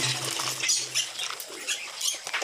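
Background guitar music fades out, leaving faint rustling with scattered light clicks.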